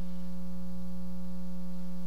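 Steady electrical mains hum with a buzz of many evenly spaced overtones, even in level throughout.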